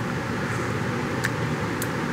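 Steady background hiss and hum of a workshop, with two faint light clicks in the second half.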